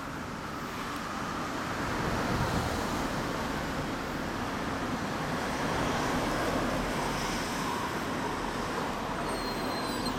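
Steady motor-vehicle engine noise, swelling slightly a couple of times.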